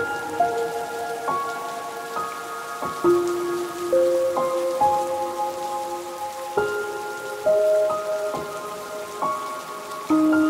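Steady rain, with a slow instrumental melody of struck, ringing notes layered over it, a new note every half second to a second.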